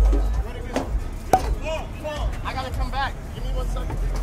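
Footsteps and knocks on steel stage stairs, with one sharp knock a little over a second in. Voices call out in the background through the middle, over a low rumble at the start.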